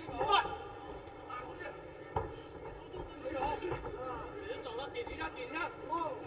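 Indistinct voices shouting, with one sharp thump about two seconds in.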